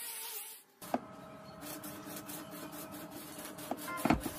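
An angle grinder's flap disc sanding a steel axe blade, cut off within the first second. After a single click, a faint steady buzzing hum follows.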